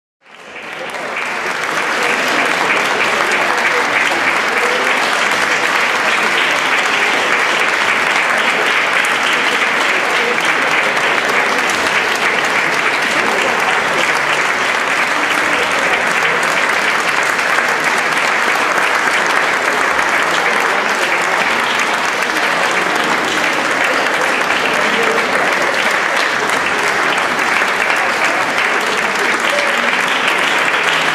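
Concert audience applauding steadily, swelling in over the first couple of seconds and then holding even.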